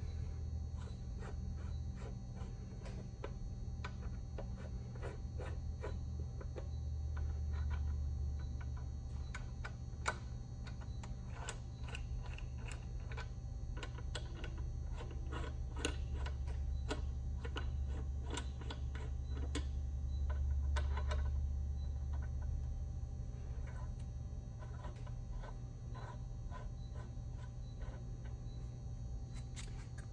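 Light, scattered clicks and clinks of metal valve caps being lifted out of an air compressor pump head and handled, with one sharper click about ten seconds in, over a steady low hum.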